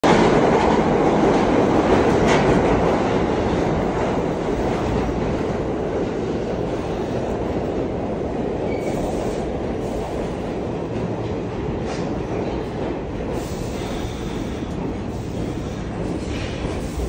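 New York City subway train pulling into an underground station, its steel wheels rumbling and clacking on the rails as the cars run past the platform. The noise is loudest as the front of the train arrives and eases off over the following seconds, with a few sharp clicks along the way.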